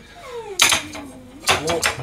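A drawn-out cry that falls steadily in pitch for over a second, with a short sharp clatter about half a second in.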